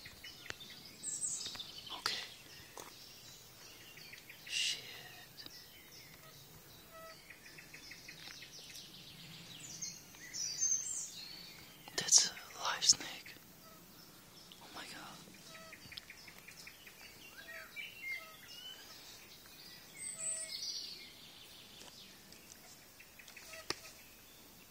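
Wild birds chirping and calling in short, scattered calls. Two sharp knocks about halfway through are the loudest sounds.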